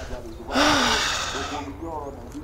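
A man's loud, breathy exhale lasting about a second, with a short voiced grunt at its start: the effort of climbing out of a car's back seat.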